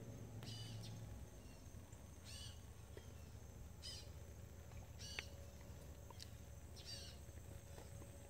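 Faint, high bird chirps, short and repeated about every second and a half, over a low steady background hum.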